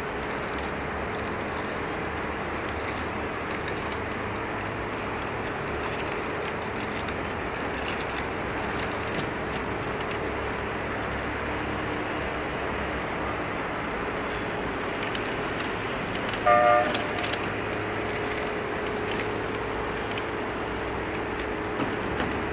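Steady city street traffic noise. About three-quarters of the way through comes a short horn toot, the loudest sound.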